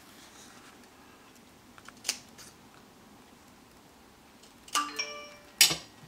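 Scissors snip once through thin cardstock about two seconds in, cutting a V into the end of a strip. Near the end comes a short ringing metallic clink and then a sharp knock as the scissors are set down.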